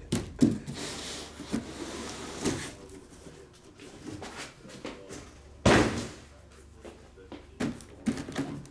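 A cardboard case of boxes being handled and opened: scattered knocks and rustling, with one loud thump about six seconds in.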